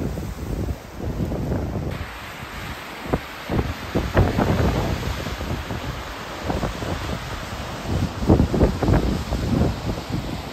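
Wind buffeting the microphone in uneven gusts. From about two seconds in, the steady rush of a waterfall joins it.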